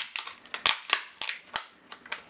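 Black plastic case of an HP laptop battery pack cracking and snapping as a small flat screwdriver pries its seam apart: a quick run of sharp clicks, the last about a second and a half in.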